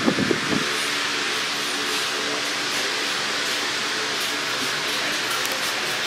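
Steady background hiss of a large store's indoor ambience, with a faint low hum under it and a brief low rumble at the very start.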